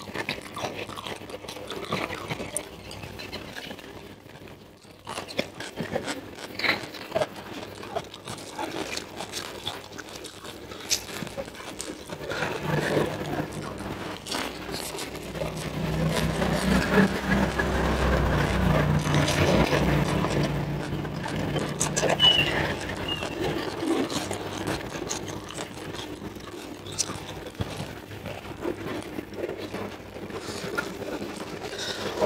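Close-up chewing and crunching of raw vegetables and raw fish, with scattered sharp crunches. About twelve seconds in, a louder low rumble swells up and fades away again about ten seconds later.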